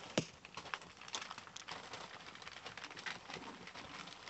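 Newspaper rustling and crackling under puppies scrambling and playing on it, with one sharp click just after the start.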